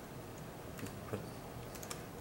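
A few faint, spaced keystrokes on a computer keyboard as a word is typed into a spreadsheet cell.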